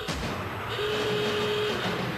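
Sound effects for an animated title card: a continuous noise with a steady whistle-like tone held for about a second in the middle.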